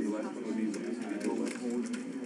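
Indistinct speech: low, soft voices talking quietly, too unclear to make out words.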